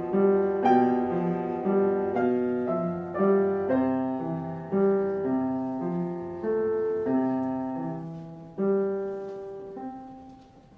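Piano playing a slow piece, notes and chords struck about every half second to a second and left to ring out. The last chord is struck a little before the end and fades away.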